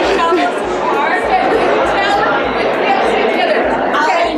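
Many voices talking at once: a steady babble of chatter with no single voice standing out.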